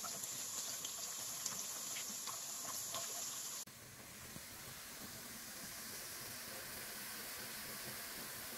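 Sliced garlic frying slowly in oil over low heat, a gentle steady sizzle with faint scattered crackles. A little past a third of the way in, the sound steps down to a quieter, even hiss.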